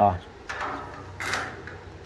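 A spirit level set down and slid against a steel box-section bed frame: a sudden knock about half a second in, then a brief scrape a little after the middle.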